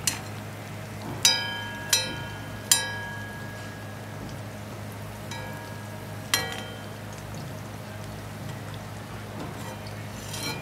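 A perforated metal skimmer clinking against a wok while turning deep-frying fritters: about six sharp, ringing metal strikes, three in quick succession between one and three seconds in and another loud one past six seconds. Under them the oil sizzles faintly over a steady low hum.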